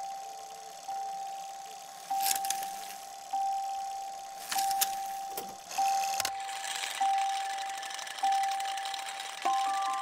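A single bell-like chime, the same note each time, struck about once every second and a quarter and left to ring down, with a few soft shimmering swishes between strikes. A tune of several notes starts right at the end.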